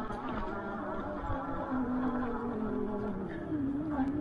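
Fat-tire e-bike's electric hub motor whining under full throttle up a steep grass incline, its pitch wavering and sagging a little as the climb loads it.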